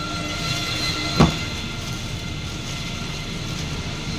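Steady street traffic noise with a faint engine drone, and a single sharp knock about a second in.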